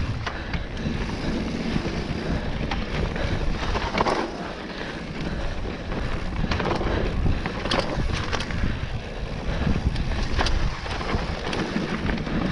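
Mountain bike riding fast down dirt singletrack: wind rushing over the camera microphone over the steady noise of tyres on dirt, broken by several sharp knocks and clatters as the bike hits bumps.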